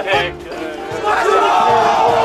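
A group of soldiers yelling a battle cry together as they charge, a loud massed shout held from about a second in.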